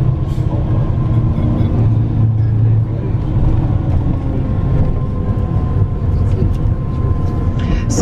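Steady low rumble of engine and road noise heard from inside a moving tour bus while it drives along.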